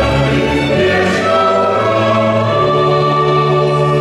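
Mixed choir singing with a small string ensemble and keyboard in a Czech Christmas pastorella, the closing chorus; about halfway through the music settles into one long held chord.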